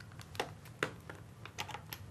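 Several faint, irregularly spaced keystrokes and clicks on a computer keyboard.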